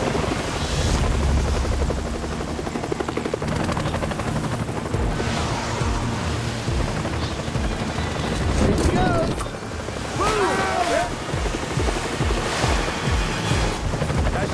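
Helicopter rotor blades chopping overhead in a rapid, even beat that comes through plainly from about five seconds in. Shouted voices rise over it around ten seconds in.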